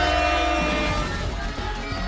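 Game-show background music: a held, chord-like note that dies away about a second in, over a steady music bed.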